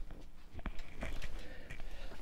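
Quiet room tone with faint movement noises and one sharp click a little over half a second in, as a person moves about off camera.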